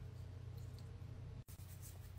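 Faint scratching of fingernails on skin over a low steady hum, broken by a brief dropout about one and a half seconds in.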